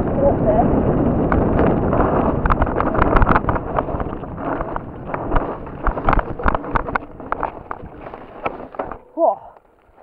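Mountain bike rattling down a steep, loose, rocky trail: a dense rumble of tyres on dirt with many sharp knocks and clatters as it hits rocks and ruts. The noise thins out and stops just after nine seconds in, followed by a short vocal exclamation.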